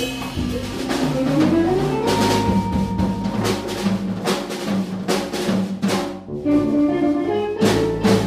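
A Latin jazz quintet of keyboard piano, electric guitar, electric bass, drum kit and congas playing together, with steady drum and conga strokes under held chords. The playing dips briefly about six seconds in, then comes back with strong hits near the end.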